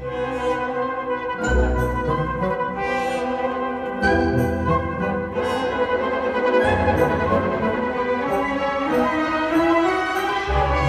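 Symphony orchestra playing live: brass and bowed strings in sustained chords, the bass line changing every couple of seconds.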